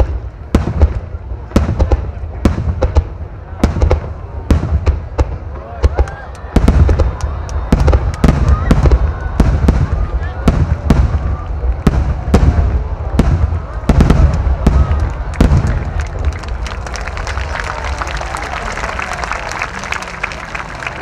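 Aerial firework shells bursting in rapid succession, many sharp booms over a continuous deep rumble. The bursts thin out over the last few seconds.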